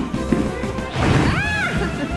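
Children jumping into a soft-play ball pit, hollow plastic balls clattering and scattering out onto the mats, with a child's short rising-and-falling squeal about a second and a half in, over background music.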